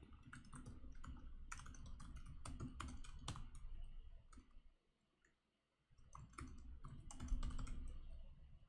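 Typing on a computer keyboard: irregular key clicks in quick runs as code is entered, stopping for about a second just past halfway before resuming.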